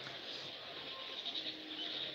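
Faint background noise with no clear sound event: a pause between speech.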